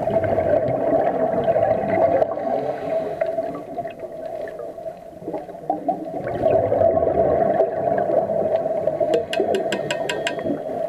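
Scuba exhaust bubbles from a diver's regulator, heard underwater through a camera housing. They swell with two exhalations, one at the start and one about two-thirds of the way through, and a quick run of sharp clicks comes near the end.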